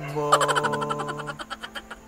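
A man's singing voice holding the last word as one long note, with a fast fluttering pulse running through it, fading away in the second half.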